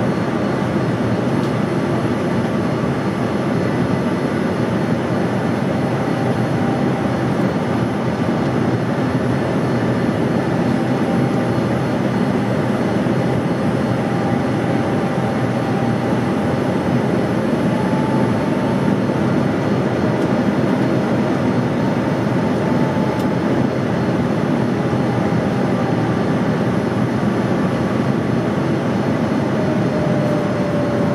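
Steady cabin noise inside a jet airliner on approach to land: an even rush of engine and airflow noise with a faint steady whine above it.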